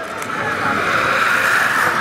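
A small group of road racing bicycles passing close at speed: a rising whoosh of tyres and wind that swells and is loudest near the end as they go by.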